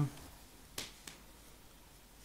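Two short clicks from hands handling the crochet work, a sharp one under a second in and a fainter one just after, over quiet room tone.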